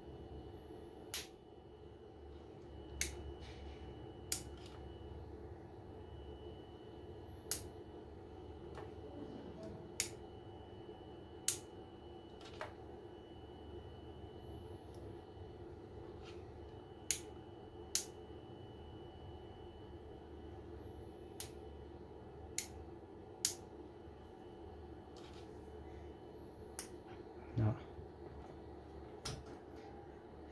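Sharp snaps as an inverter's output wires are touched together by hand, about fourteen at irregular intervals over a steady low hum. Each is a deliberate short circuit on the output, which the inverter's short-circuit protection trips on.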